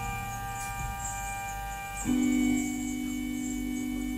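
Slow, held organ-like chord from a live rock band, changing to a new, fuller chord about two seconds in, with a faint hiss behind it.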